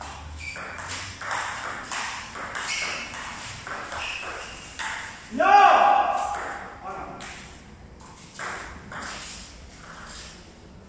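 Table tennis rally: the ball clicking off the paddles and the table in quick succession. About five and a half seconds in, a person lets out a loud cry that rises in pitch and is held for about a second.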